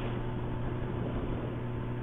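Motorcycle engine running steadily at highway cruising speed, about 100 km/h, as a constant low hum mixed with wind and road noise.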